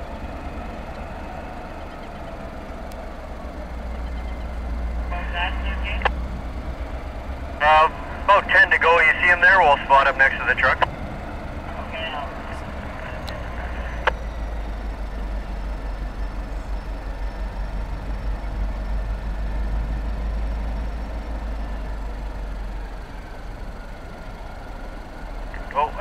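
EMD SD40-2 diesel locomotives working a loaded rock train, a low steady rumble that swells slightly as they approach. Twice, about five and eight seconds in, short bursts of tinny radio chatter break in.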